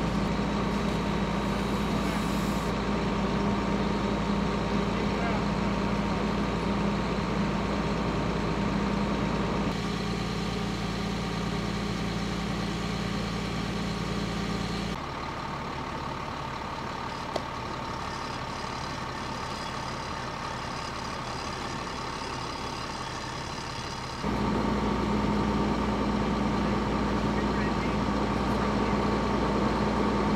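Steady drone of a fire engine's diesel engine running on the fireground, with a constant hum over a low rumble. It drops quieter and thinner for about nine seconds just past the middle, then comes back at full level.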